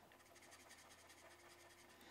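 Faint scratching of a Copic alcohol marker's nib on cardstock in quick, repeated short strokes.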